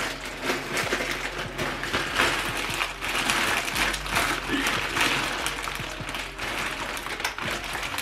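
Plastic poly mailer bag being pulled and torn open by hand, with dense, irregular crinkling and rustling of the plastic.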